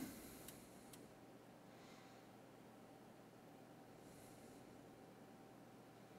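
Near silence: faint room tone with a thin steady hum and a couple of faint ticks in the first second.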